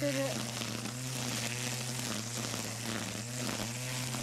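Cordless battery-powered string trimmer running steadily, its nylon line cutting through tall grass: a constant low motor hum under an even hiss.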